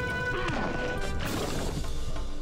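Dramatic TV-drama background music with held notes, and a sudden impact sound effect about a second in.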